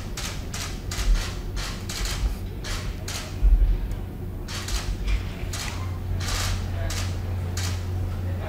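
Still cameras' shutters clicking repeatedly and irregularly, several a second, over a steady low hum.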